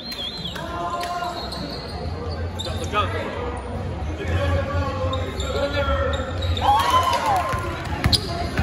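Basketball being dribbled on a hardwood gym floor during live play, mixed with indistinct shouts from players and spectators. A sneaker squeak sounds about seven seconds in, and the sound carries the echo of a large gym.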